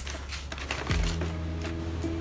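A paper bag rustling, with a run of short clicks as small plastic paint jars are handled. Soft background music with held notes comes in about a second in.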